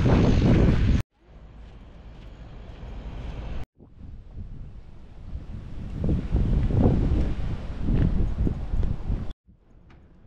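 Wind buffeting the camera microphone: a low, uneven rumble that grows louder and gustier in the second half, broken by two abrupt breaks and cut off suddenly near the end.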